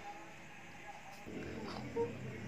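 Mostly quiet, then from a little past halfway a faint, low growl from a man imitating a werewolf.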